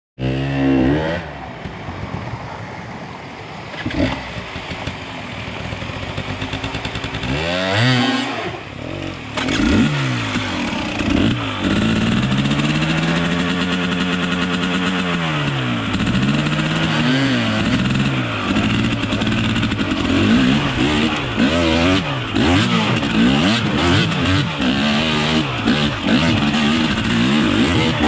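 Dirt bike engine under way, its pitch rising and falling again and again as the throttle is opened and closed. It is lower and quieter for the first several seconds, then louder, with a long smooth rise and fall in the middle and quick throttle changes through the last part.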